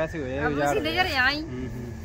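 People talking outdoors, one voice rising high near the middle, over a steady low rumble.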